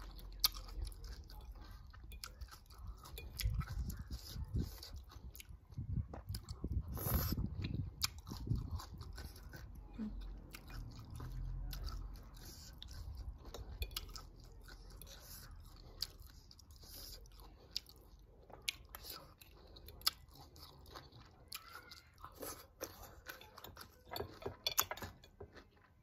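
Close-up eating sounds: a person chewing and crunching a mouthful of shredded green mango salad, in irregular bites, with a few sharp clicks scattered through.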